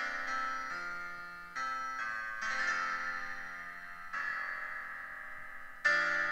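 Piano piece played back by the Flat score editor's built-in piano sound: held chords struck about once a second and left to fade, with a louder accented chord near the end.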